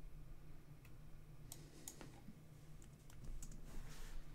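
Faint, irregular clicks of a computer mouse and keyboard while rendering settings are changed, over a low, steady hum.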